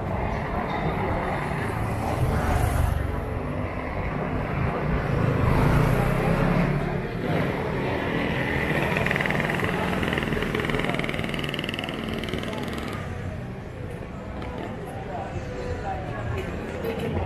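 Busy city street ambience: traffic running by under indistinct background voices, with a vehicle passing louder about six seconds in.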